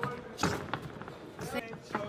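About five irregular, sharp thuds of kickboxers' strikes and footwork on the ring canvas.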